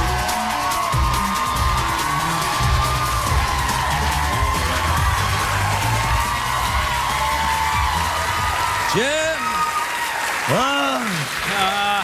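Band music with a steady beat under a studio audience applauding and cheering; from about nine seconds in, voices call out over it.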